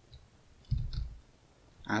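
A few soft computer keyboard keystrokes, bunched together about a second in.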